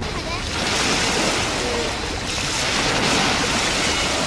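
Small waves breaking and washing up on a sandy shore, a steady hiss of surf, with wind on the microphone.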